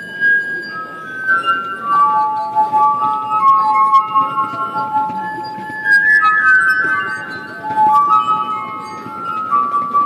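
Glass harp: fingertips rubbed around the rims of tuned wine glasses, playing a slow melody of long, pure ringing notes that overlap one another.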